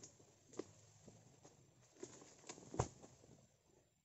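Footsteps of a harvester walking through undergrowth around an oil palm: a few faint, scattered taps and crunches, the sharpest about three quarters of the way in.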